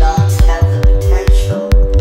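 Psytrance dance music: a steady kick drum a little over twice a second, bass notes rolling between the kicks, and held synth chords above.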